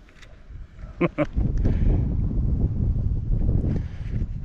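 A short laugh, then wind buffeting the microphone with a loud low rumble for about two and a half seconds.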